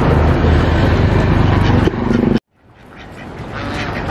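A steady low mechanical hum over a flock of ducks and geese in their pen, cut off suddenly about two and a half seconds in, after which quieter outdoor sound with the flock slowly comes up.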